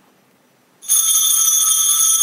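Altar bell struck once about a second in, ringing on with several steady high tones. At this point in the Mass it marks the consecration of the chalice.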